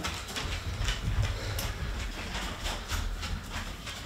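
Upright exercise bike being pedalled: a steady low rumble from the flywheel and drive, with faint irregular ticks from the mechanism.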